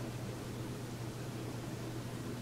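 Steady background hiss with a constant low hum: room tone, with no distinct event.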